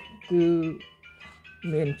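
A man's voice speaking over soft background music with steady, sustained chime-like tones; one long drawn-out syllable about a third of a second in, then more syllables near the end.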